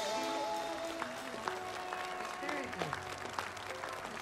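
Applause of scattered hand claps over the fading last notes of music, the whole slowly getting quieter.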